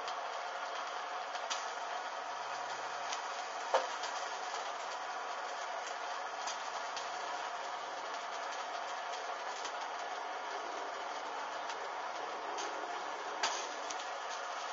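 A handheld gas blowtorch hisses steadily as it burns padded bra fabric. A few sharp crackles come from the burning fabric, the loudest about four seconds in and just before the end.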